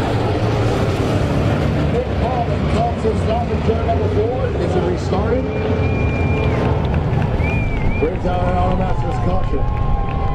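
Dirt-track modified race cars' V8 engines running steadily as the field circles the oval. Voices talk over them from about two seconds in.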